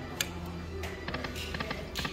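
Eyes of Fortune Lightning Link poker machine spinning its reels: a run of quick ticks and short electronic tones over a steady low hum.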